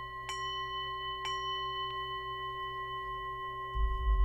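Metal singing bowl tapped with a wooden striker a few times, about a second apart, ringing on steadily with a low hum and several higher overtones. A low thud comes near the end.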